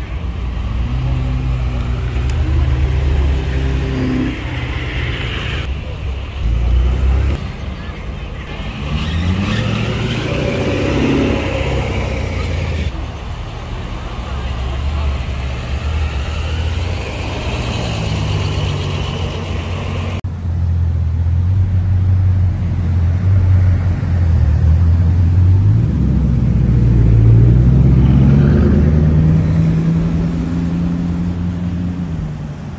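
Several luxury cars driving slowly past one after another, their engines running, with people talking around them. Near the end an engine revs up, rising in pitch, as a car pulls away.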